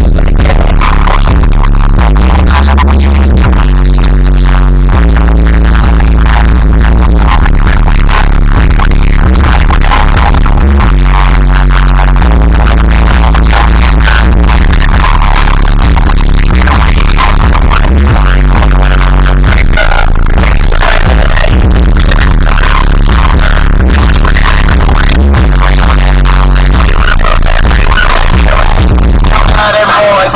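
Loud music with a heavy, repeating bass beat, playing over a car stereo; the bass drops out just before the end as the track changes.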